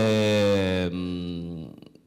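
A man's long, drawn-out hesitation sound, 'uhhh', held on one steady pitch for about a second and a half, then trailing off.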